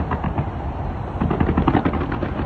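A rapid barrage of fireworks going off, a dense run of pops and crackles in quick succession, heaviest about one and a half seconds in.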